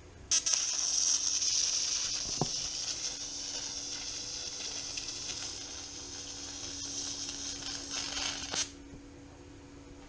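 TIG welding arc on steel: it strikes with a sharp crack about a third of a second in, hisses steadily for about eight seconds, then cuts off.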